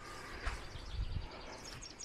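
Quiet outdoor background noise with a faint low rumble, and faint bird chirps coming in from about halfway through.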